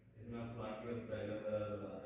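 A man's voice speaking in a continuous, drawn-out phrase, echoing in a large hall.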